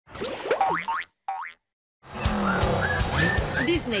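Cartoon sound effects: a run of springy, sliding boings in the first second and a half, then a moment of silence. Upbeat jingle music with rising slide notes and sharp percussive hits begins about two seconds in, and an announcer's voice comes in at the very end.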